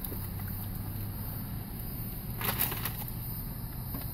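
A steady low hum inside a car cabin, with a brief crinkle of a paper food wrapper about two and a half seconds in.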